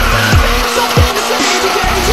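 A drifting car sliding with its tyres squealing, mixed with electronic music driven by a steady, heavy kick-drum beat.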